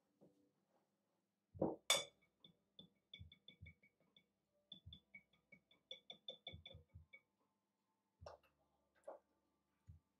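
Wire whisk clinking and tapping against a ceramic mixing bowl while whisking glaze. There are two louder knocks a little under two seconds in, then a quick run of light ringing clinks for a few seconds, and two more knocks near the end.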